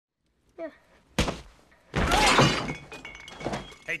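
Film fight sound effects: a sharp thunk about a second in, then a louder crash with something breaking, and a smaller knock near the end.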